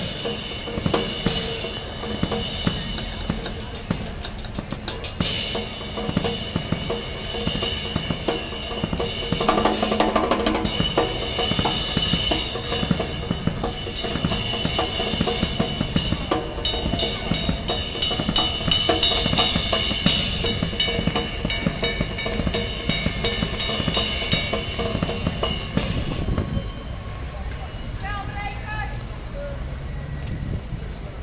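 Music with a steady drum-kit beat, snare and bass drum, over the voices of a street crowd. Near the end the beat stops, leaving street noise and voices.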